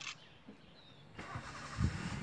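A vehicle's engine starting up a little over a second in, with a deep burst of sound near the end as it catches.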